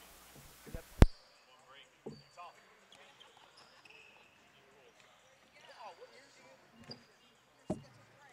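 Basketball gym sounds: a basketball bouncing on the court a few times, short sneaker squeaks and distant voices of players and spectators. A single sharp click about a second in is the loudest sound.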